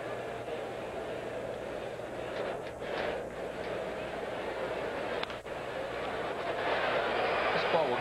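Ballpark crowd murmuring steadily, with a single sharp crack of a bat on the ball about five seconds in, after which the crowd noise swells as the ball is fouled up into the stands.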